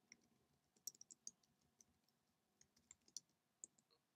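Faint computer keyboard keystrokes: a handful of separate light clicks, spaced irregularly, against near silence.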